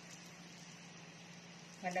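Faint rustling of a plastic-gloved hand mixing and kneading glutinous rice flour and mashed sweet potato into buchi dough in a bowl, over a steady low hum.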